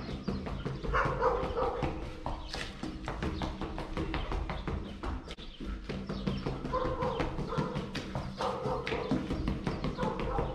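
Rapid, light footsteps of sneakers tapping on a concrete floor during agility-ladder footwork, many steps a second, over a steady low hum.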